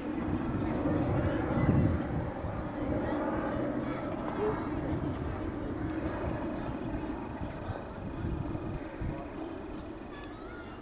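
Outdoor ambience: a steady low rumble with faint, distant voices.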